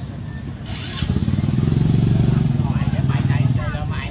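A passing motor engine: a low, pulsing engine sound that builds from about a second in, is loudest around the middle and fades away near the end.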